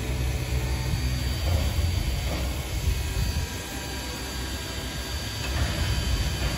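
Steady low rumble of a locomotive standing and running. It eases somewhat in the middle and comes back up near the end.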